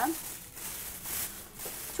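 Thin plastic bag crinkling and rustling as it is handled and squeezed, an uneven rustle that comes and goes.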